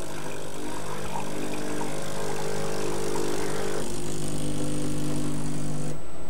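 Gaggia Anima Prestige bean-to-cup machine's pump humming steadily as it pushes descaling solution through the machine during the Calc Clean cycle. The hum grows slightly louder, and its tone changes about four seconds in.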